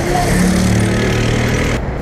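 A motor vehicle's engine humming steadily close by over road noise, heard from a moving bicycle. It cuts off abruptly just before the end.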